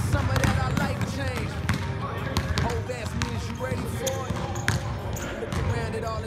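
Basketballs being dribbled on an indoor gym court, a steady run of bounces from several balls at once, with sneakers squeaking as players cut and drive.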